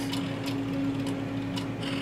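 Rudolph Auto EL III ellipsometer humming steadily while it initializes, with a few faint, irregular ticks from its motors rotating the analyzer and polarizer prisms.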